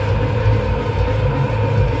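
Heavy metal band playing live: distorted electric guitars and bass over a drum kit, loud and dense without a break.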